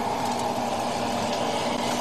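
Gas wok burner running at high flame: a steady rushing noise with a constant low hum underneath.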